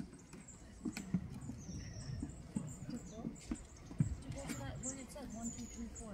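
Small birds giving short, high, thin calls now and then, over a low murmur of voices, with a few sharp knocks about a second in and about four seconds in.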